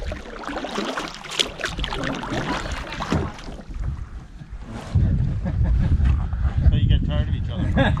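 Canoe paddle strokes splashing and dripping in lake water, with people's voices faintly in the background. About five seconds in, wind starts buffeting the microphone with a low rumble.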